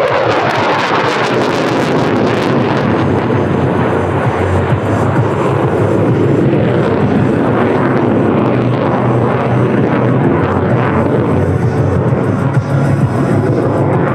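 The single Volvo RM12 turbofan of a JAS 39C Gripen fighter running at high power through a display manoeuvre overhead, its hiss strongest in the first two or three seconds. Music plays under the jet noise.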